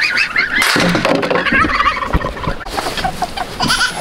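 Young geese calling from their pen with repeated wavering, high-pitched peeping calls, joined by a couple of knocks from the pen's metal door frame.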